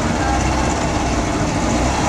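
Boat engine running with a steady low drone over a constant rush of wind and water noise.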